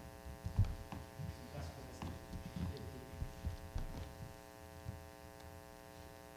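Steady electrical mains hum in the microphone feed, with irregular faint low thumps and knocks over it, the loudest about half a second in.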